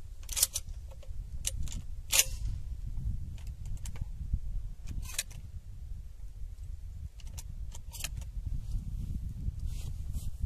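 Scattered sharp clicks and knocks of a shotgun and gear being handled, over a low steady rumble. The loudest click comes about two seconds in, with a few more later. No shot is fired.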